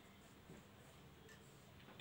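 Near silence: quiet room tone with a few faint ticks of a marker writing on a whiteboard.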